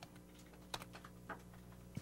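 Faint clicking at a computer: a few short clicks about half a second apart, over a steady low hum.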